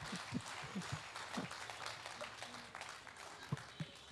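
Audience clapping with scattered laughter, dying away.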